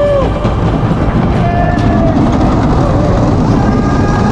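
Wooden roller coaster train rumbling and clattering over its wooden track as it crests the lift and drops, with riders' shouts rising and falling near the start and again about halfway.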